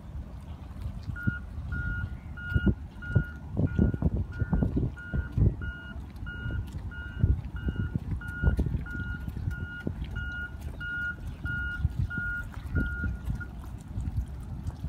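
A high electronic beep repeating evenly, about two beeps a second, starting about a second in and stopping near the end, over irregular low thumps and rumble.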